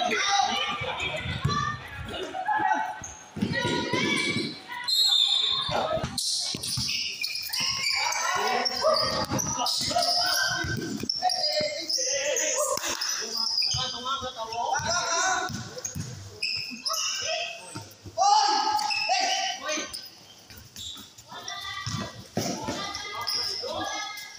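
A basketball bouncing again and again on a concrete court during a game, with players' voices calling out over it.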